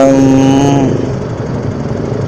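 Motorcycle engines idling in stalled traffic: a steady low engine hum that is left on its own once a drawn-out word ends, just under a second in.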